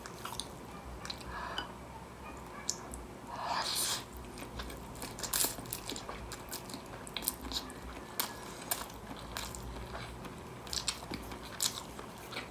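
Close-miked chewing of stir-fried egg noodles with beef: soft wet mouth clicks and smacks scattered throughout, with a brief louder wet sound about three and a half seconds in.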